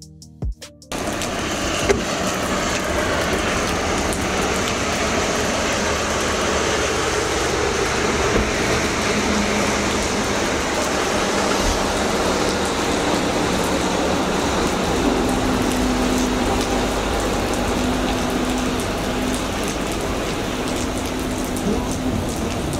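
Steady rain falling on pavement, starting just after the last beat of a song cuts off about a second in. A faint low steady hum joins in under the rain about two-thirds of the way through.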